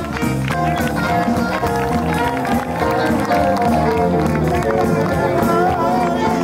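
A live small band playing an up-tempo swing number, with violin, electric bass guitar, drums and piano over a steady beat.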